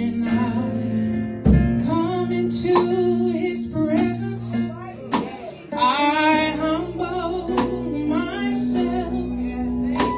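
A woman singing a gospel solo into a microphone, her voice wavering on long held notes, over sustained keyboard chords with occasional drum hits.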